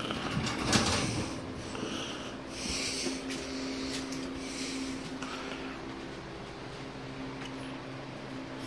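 A steady low electrical hum from a running appliance, with a few brief rustles and knocks in the first few seconds.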